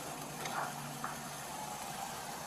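Steady background hiss from a police body camera's microphone outdoors, with a faint low hum under it and a light click about a second in.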